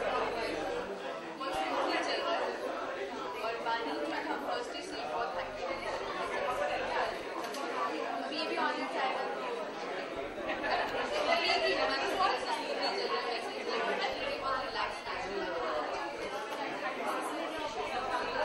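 Speech: a woman talking over background chatter from other people.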